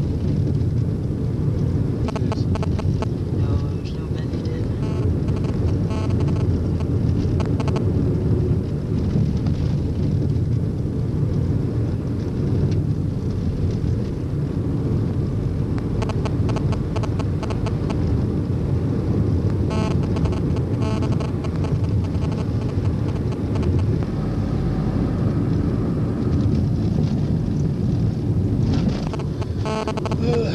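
Steady road and engine rumble heard inside the cabin of a moving car.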